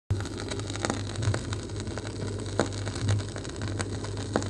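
Stylus running in the lead-in groove of a spinning vinyl record: steady surface hiss and a low hum, with scattered clicks and pops, before the music starts.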